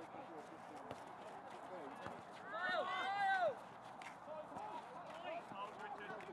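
Distant footballers calling out to each other on the pitch: one long raised shout about two and a half seconds in, then fainter calls, over faint knocks from play.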